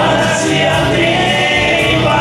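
A rock band playing live, with electric guitars, bass and keyboard under a held choir-like vocal part and no clear sung words.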